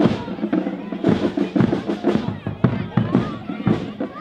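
A marching band playing: held brass notes under frequent sharp drum strikes, with the voices of a walking crowd mixed in.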